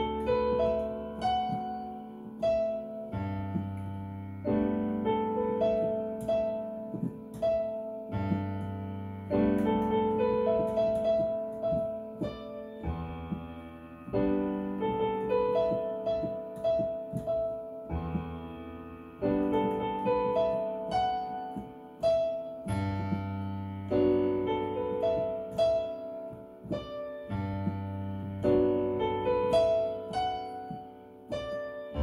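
Piano sound from an electronic keyboard played with both hands: low bass notes held for a second or two under a right-hand melody and chords, at a steady moderate pace.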